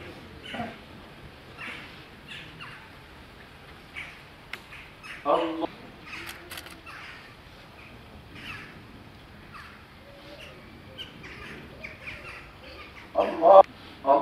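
A mostly quiet pause with birds calling faintly and intermittently throughout. A man calls out "Allah…" once about five seconds in, at the start of a prayer for the dead, and a louder short call comes shortly before the end.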